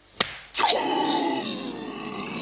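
A short sharp click, then a loud drawn-out vocal groan that falls in pitch over about a second and a half.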